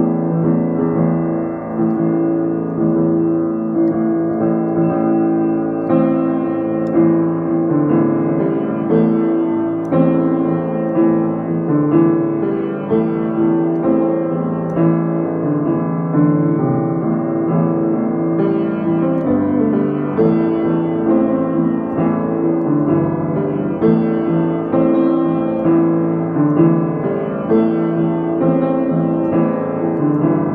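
Petrof upright piano played with both hands: a melody over sustained chords, the notes ringing into one another.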